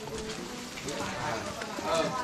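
Several people talking in the background, with footsteps on a wet, muddy path.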